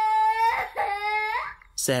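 A man's voice acting a small child's wailing: two long, high, held cries, each rising at the end, with a short gap between them. Ordinary narration starts just before the end.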